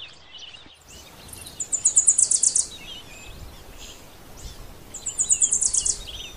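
A bird giving two rapid high trills, each lasting about a second, the second about three seconds after the first, over a steady background hiss with fainter scattered chirps.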